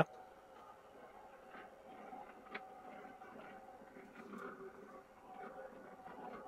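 Motorized floor-rising projector screen lowering into its case: a faint, steady electric motor hum with a few soft ticks.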